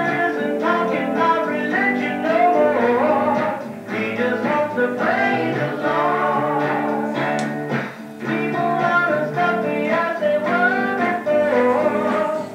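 Early-1970s Jesus music recording played back over classroom speakers: a man singing with guitar accompaniment.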